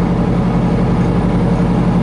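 Semi-truck's diesel engine running steadily at highway cruise, heard inside the cab as a loud, even drone at one unchanging pitch over road noise.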